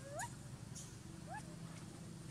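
Baby pig-tailed macaque giving two short rising calls about a second apart, over a low steady background hum.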